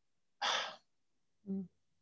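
A person's quick, audible intake of breath, followed about a second later by a short hummed "mm".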